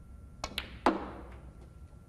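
Snooker shot: light taps as the cue tip strikes the cue ball, then a sharp, loud click just under a second in as the cue ball hits an object ball, followed by a few faint clicks of balls rolling on.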